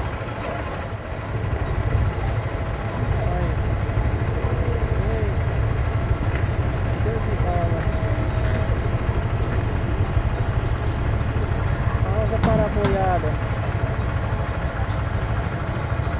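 Vehicle engine idling, a steady low rumble, with voices now and then over it.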